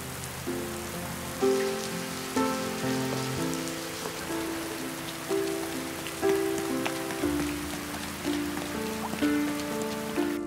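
Steady rain falling on pavement, with slow, soft background music of single melodic notes over it.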